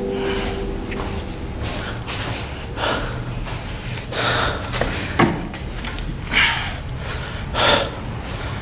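Breathing of a person walking: four or five loud breathy exhalations about a second and a half apart, over a steady low rumble of handling noise.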